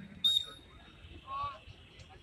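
A dog giving a short, high whine about two-thirds of the way in, after a brief sharp click just after the start.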